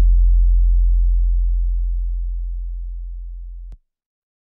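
A single deep bass note left ringing after a rap beat stops, fading slowly, then cut off abruptly near the end.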